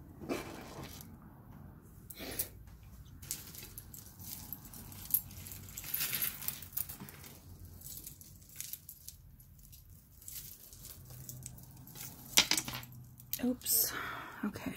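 Metal chain jewelry jingling and clinking as it is handled and set down on a wooden tabletop, in scattered small clicks and rattles.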